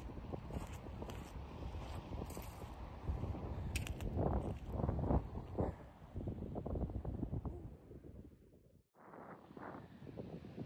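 Wind buffeting a phone microphone, with footsteps crunching and clicking on shingle. The wind rumble cuts out briefly near the end.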